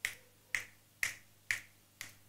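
Faint, sharp clicks at an even pace of about two a second.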